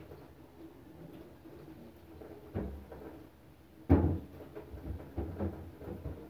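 Dishes being washed by hand in a stainless-steel sink: handling noise with several dull knocks, the loudest about four seconds in.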